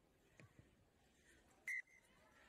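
Near silence, broken near the end by one short blast of a referee's whistle.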